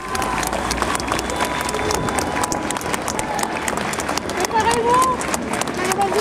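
Outdoor crowd clapping irregularly, with many sharp claps throughout, mixed with the voices of people talking and calling out. The voices are loudest about two-thirds of the way through.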